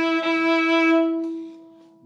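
A violin played fiddle-style, sounding one long bowed note: an E, the home note of the E Dorian scale. The note holds steady, then fades away over the last second.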